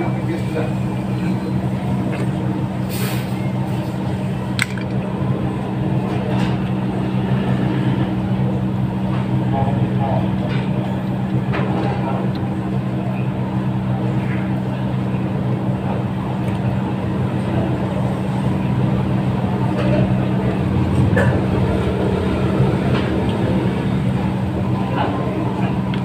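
A steady low mechanical hum, like a motor or engine running, with a few short clicks.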